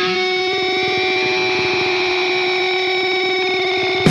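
Instrumental passage of a post-hardcore rock song: electric guitar through effects holds ringing, sustained notes over a fast pulsing figure, with no singing.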